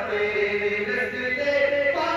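A man singing a naat, an Urdu devotional poem, in long held notes that step from one pitch to the next.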